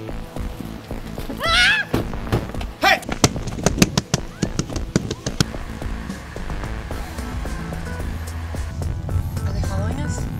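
A quick run of clicks and knocks as car doors are yanked open and slammed shut. Then a car running steadily as it pulls away, with film music underneath.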